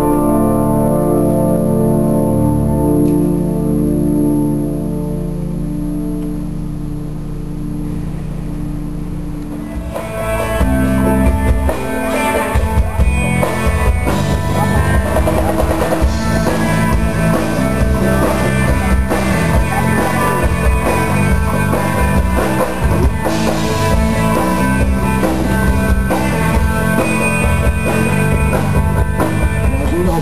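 Church organ holding sustained chords, ringing in a large reverberant space. About ten seconds in it gives way abruptly to amplified rock-style music with a drum kit and guitar.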